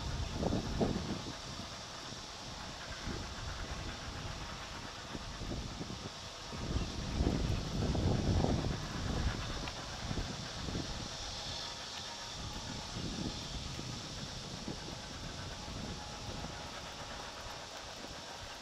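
Outdoor harbour ambience: a steady hiss of background noise, with low gusts of wind buffeting the microphone at the very start and again, louder, for a few seconds in the middle.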